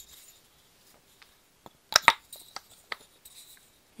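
Wooden kendama being handled, its ball and wooden body knocking together. Two sharp clicks come about two seconds in, followed by a few lighter ticks and faint handling rustle.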